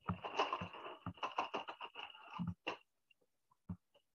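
Colored pencils clicking and clattering against one another as they are rummaged through to find one: a quick run of small clicks and rustles for a few seconds that thins out near the end.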